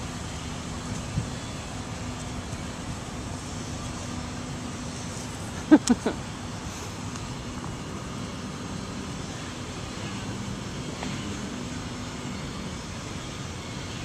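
Steady background hum of motor traffic, with a short laugh about six seconds in.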